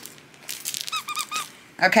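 Squeaker inside a plush seal dog toy squeezed by hand, giving three quick high squeaks about a second in, amid rustling as the toy is handled.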